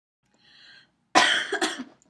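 A woman coughs: one loud cough in two quick bursts about a second in.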